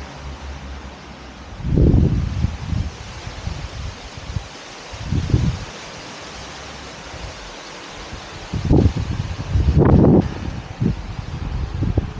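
Wind buffeting the microphone outdoors: a steady hiss broken by irregular low rumbling gusts, the strongest near the end.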